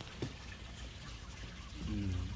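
Faint, steady trickling of water over a low hum, with one small click about a quarter second in; a man's voice starts just before the end.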